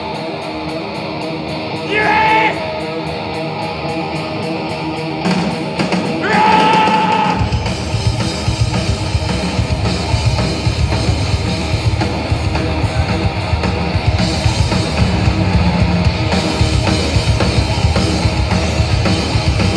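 Live punk rock band heard from the crowd: electric guitar ringing with two short held vocal notes, then about seven seconds in the drums and bass come in and the full band plays loud.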